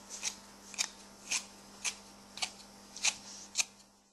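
A grooming tool drawn in short strokes through an Airedale Terrier's wiry facial hair: about seven brief rasping swishes, roughly two a second.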